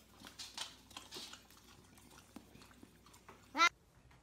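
A dog licking and smacking its lips over a treat, a string of soft wet clicks. About three and a half seconds in, a brief sharp squeal rising in pitch, the loudest sound.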